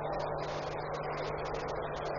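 A pause in speech filled only by steady background hiss with a constant low hum underneath, the noise floor of an old recording.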